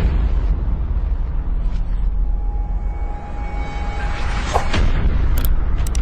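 Cinematic logo-reveal sound effect: a sudden boom opens a long, deep rumble with a hiss over it. A thin held tone enters about two seconds in, and short whooshes sound near the end.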